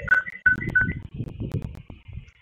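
Electronic notification chime from a video-call app: a few quick beeps alternating between two high pitches in the first second, over muffled low handling noise with a couple of sharp clicks.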